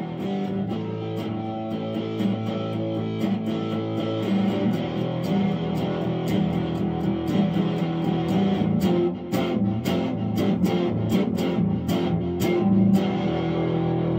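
Electric guitar played through a small combo amplifier, an instrumental passage with no singing. From about eight and a half seconds in it turns to quick, evenly spaced strummed chords, a few strokes a second, which stop about a second before the end.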